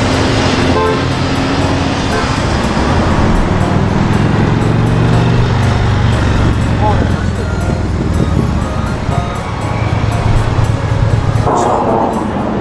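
Steady road traffic noise from cars and buses passing on a busy multi-lane street, with background music playing over it.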